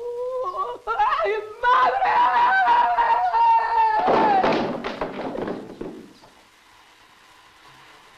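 A man wailing loudly without words: a long, high, wavering cry that turns into a rough, breathy sob about four seconds in and dies away around six seconds.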